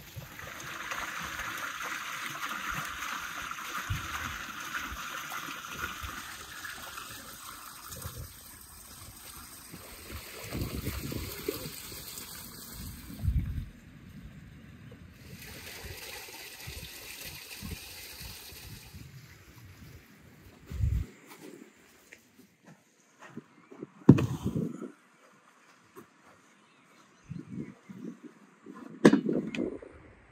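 Water running steadily from a stone spring's spout and splashing into metal bowls as raw beef is rinsed, loudest in the first several seconds, then fading to quieter water. In the second half a few separate knocks and bumps stand out.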